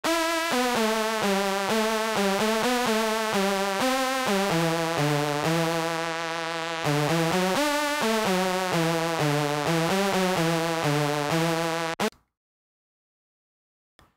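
Synthesizer lead playing a melody of short notes in FL Studio, in mono: the Fruity Stereo Shaper takes the left channel alone and plays it through both sides, which keeps its crunchy character better than merging to mono. Playback stops abruptly about twelve seconds in.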